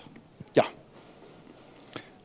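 A man says one short 'ja' into a handheld microphone about half a second in; the rest is quiet room tone.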